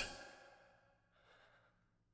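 Near silence between sung phrases: the last note fades out in the first half second, then the singer breathes in faintly at the microphone about a second in.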